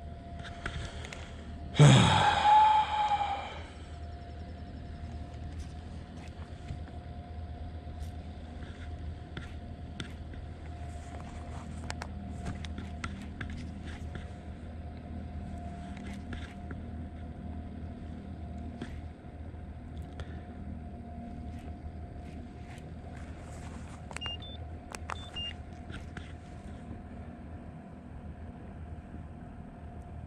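Bow-mounted electric trolling motor running with a thin steady whine over a low rumble. A short, loud sweep of sound falling in pitch comes about two seconds in.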